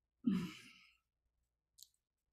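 A single short, breathy exhaled laugh from a person, falling away within about half a second, with a faint click near the end.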